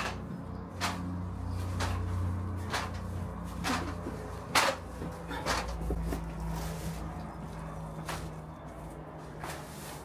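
Footsteps going down stairs and along a hallway, a short knock about once a second, over a low steady hum.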